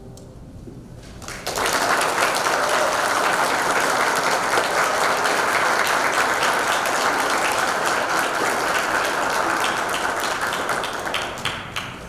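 Audience applauding. The applause breaks out about a second and a half in and thins to a few last separate claps near the end.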